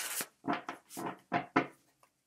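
A tarot deck being shuffled by hand: a run of about six short card slaps and rustles in quick succession, stopping near the end.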